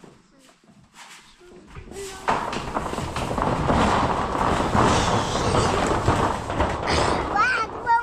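A plastic basin with a child sitting in it is dragged across corrugated metal roofing sheets, scraping and rumbling loudly over the ridges from about two seconds in. A child's voice rises briefly near the end.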